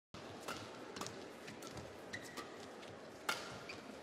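Badminton rally: a string of sharp racket hits on the shuttlecock, spaced about half a second to a second apart, the loudest about three seconds in. Brief shoe squeaks on the court surface sit between the hits over a faint hush of the arena.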